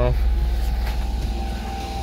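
A Honda Acty mini truck's carbureted three-cylinder engine running steadily at its fast cold idle while it warms up.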